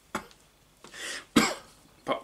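A man coughing once, sharply, about one and a half seconds in, after an audible intake of breath.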